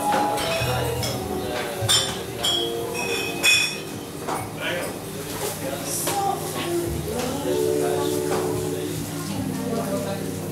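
Bar room chatter, with tableware clinking sharply several times in the first few seconds.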